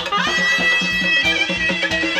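Live wedding dance music: a reedy wind-like lead melody comes in with a short upward slide just after the start and holds a long high note over a steady drum beat.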